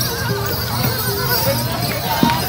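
Javanese barongan procession music: a high wavering melody line over scattered drum strikes, with crowd noise underneath.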